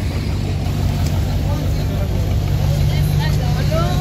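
A car engine running steadily at low revs.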